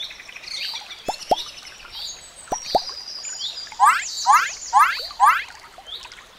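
Nature ambience of birds chirping and whistling, with water drops plopping twice in quick pairs. In the second half come four loud rising whistled calls, about two a second.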